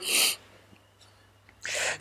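A man's breathy, wordless laughter: two short hissing gusts of breath, one at the start and one near the end, with a quiet pause between.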